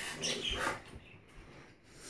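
Short wet sucking and lip-smacking mouth sounds with small squeaks, from someone sucking on a gummy candy, in the first second, then faint.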